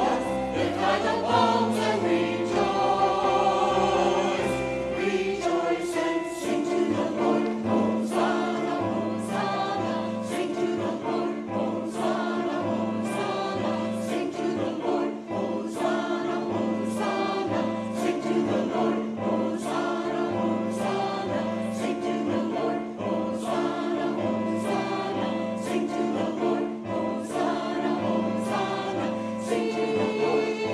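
Robed church choir of mixed men's and women's voices singing an anthem in parts. Short accompanying note attacks recur about once a second, with a low note held from about six seconds in.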